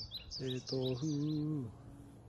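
A man chanting a waiata in a few long held notes over a run of quick, high, falling bird chirps; the chirps fade after about a second and a half and the voice stops shortly after.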